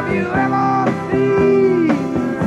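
Background rock music with guitar, steady beat and sliding notes.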